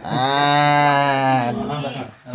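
A man's long, drawn-out vocal sound held at a steady low pitch for about a second and a half, then trailing off.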